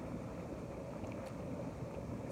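Hot tub jets running: a steady rumble of churning, bubbling water.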